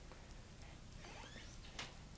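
Quiet room tone with a faint low hum, and a few faint clicks and rustles about a second and a half in as the handheld iPod is moved.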